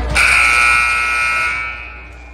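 Gymnasium scoreboard buzzer sounding one long steady blast of about a second and a half, dying away near the end.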